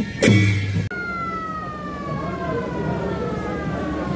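Band music with a drum stroke over a bagpipe-like drone, cut off just under a second in. Then a siren tone falls slowly and steadily in pitch over about three seconds, over a rush of road noise.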